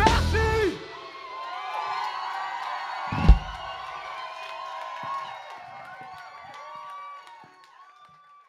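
Music with drums stops abruptly under a second in, leaving a concert crowd cheering, whooping and shouting, with one loud thump about three seconds in. The cheering fades out near the end.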